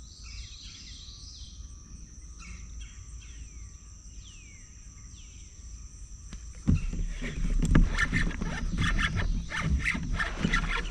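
Steady high insect buzzing with a bird giving repeated falling whistles, then about seven seconds in a sudden loud, rough run of knocks and thrashing noise as a big northern snakehead hits the topwater frog and yanks the rod over.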